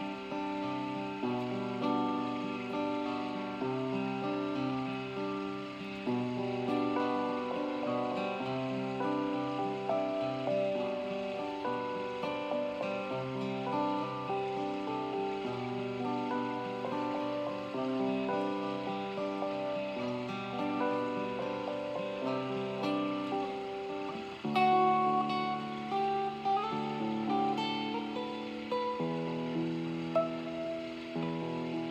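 Acoustic guitar and Casio electronic keyboard playing an instrumental passage of held chords that change every second or two. The music grows louder about 24 seconds in.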